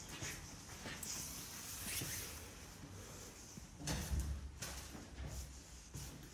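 Footsteps walking at an even pace along an indoor corridor floor. There is a heavier thump with a low rumble about four seconds in.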